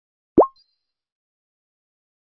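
A single short synthetic 'plop' interface sound effect, a quick upward-sweeping pop with a faint high tone trailing it, marking a button click and slide change.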